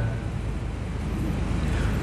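Steady background noise, an even hiss with a low hum underneath, with no distinct event in it.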